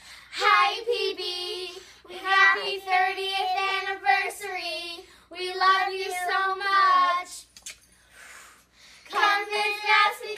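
Girls singing together with no instruments, in sustained sung phrases with short breaths between them and a longer pause near the end before the next line begins.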